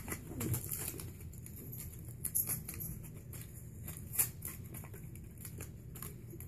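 Faint handling noise: scattered small clicks and rustles as a fishing lure is worked out of its packaging by hand, over a low steady hum.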